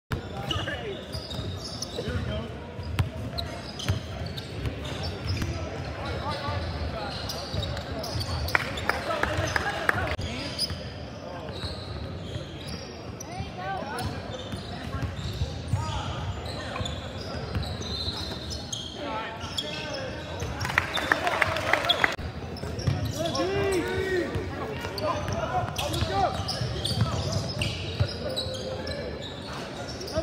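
A basketball being dribbled and bouncing on a hardwood gym floor during a game, with repeated short thuds, under shouting voices of players and spectators that echo in the large hall.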